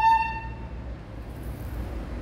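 Susato tin whistle holding its final high note, which stops about half a second in, leaving only a low steady background noise.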